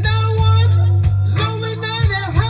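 Blues record playing from a 7-inch vinyl single on a turntable: a woman sings a gliding melody over a steady bass line and guitar.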